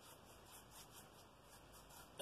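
Faint rubbing of a paintbrush stroking across watercolour paper, a run of short strokes.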